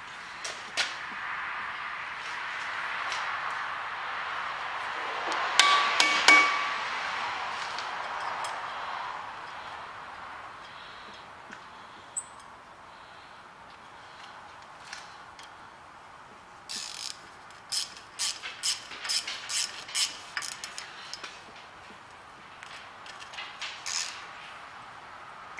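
Metal knocks and clicks as a new brake disc is seated on a van's rear hub, over a broad hiss in the first part. A few sharp ringing knocks come about six seconds in. Near the end a run of quick clicks comes as the disc's T40 Torx retaining screw is driven in with a screwdriver.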